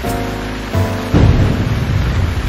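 Weather-segment intro stinger: sustained music chords, then about a second in a sudden loud rumbling crash like a thunderclap, carrying on as a dense rushing noise like heavy rain.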